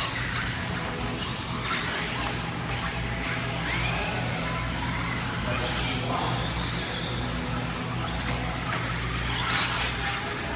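Electric 1/10 RC buggies, among them a Tamiya TRF211XM with a Trinity 7.5-turn brushless motor, running laps on an indoor clay track: motor whines rising and falling with the throttle, over a steady low hum and background music.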